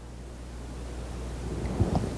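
Low steady room hum with no speech, a brief faint sound just before the end.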